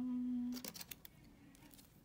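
A woman's held, level-pitched 'mmm' hum for about two-thirds of a second, followed by a few light clicks as a plastic nail-tip display stick is handled.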